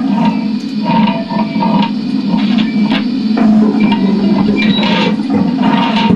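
Improvised experimental music on amplified electric string instruments: a steady low drone with scraping, clicking noises scattered over it.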